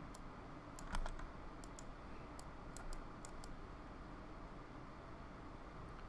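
Faint, scattered clicks of a computer mouse and keyboard, about a dozen over the first three and a half seconds, the loudest about a second in, over a faint room hiss.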